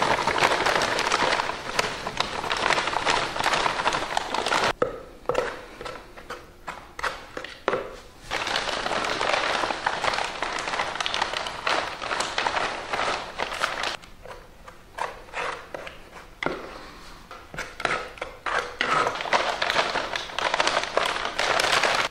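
Thistle Bonding plaster powder, a grainy gypsum undercoat, poured from its paper bag into a small tub of water: a rustling, crackly hiss of the grains and the bag, in three spells with short breaks about five seconds in and again around fourteen seconds.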